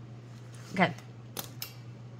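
Two short, sharp clicks about a quarter of a second apart from handling a pen and sticky-note pad on a desk, after a spoken "okay", over a steady low hum.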